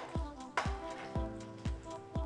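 Background music with a steady kick-drum beat, about two beats a second, over held chords.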